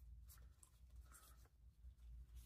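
Faint rustling and a few light ticks of a stack of paper die-cut stickers being handled and fanned out in the hands.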